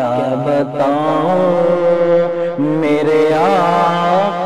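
Sung devotional chant: several voices holding long, steady notes, with a wavering melody line rising and falling over them.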